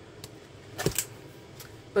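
A plastic-wrapped grocery package being picked up and handled: a couple of short knocks and rustles a little under a second in, with quiet handling noise around them.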